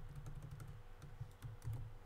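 Faint computer keyboard typing: a quick run of light key clicks as an equation is entered.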